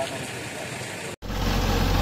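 Faint outdoor ambience with distant voices. A little over a second in, after a brief dropout, a farm tractor's engine starts up in the mix, running steadily with a deep drone.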